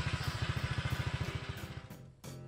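Honda ADV150 scooter engine running through a Moriwaki Full Exhaust ZERO SUS stainless aftermarket exhaust, giving a steady, rapid, evenly spaced low pulse that fades out near the end.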